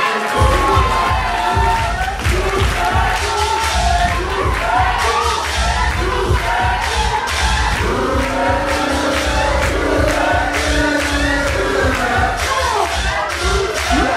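Crowd cheering and screaming over a dance track with a heavy, steady bass beat that kicks in just after the start.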